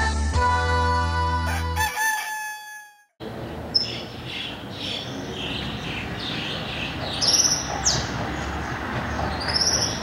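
A music jingle fades out in the first two to three seconds. After a short gap comes steady outdoor night ambience with a rooster crowing, along with repeated shorter calls and two brief high calls near the end.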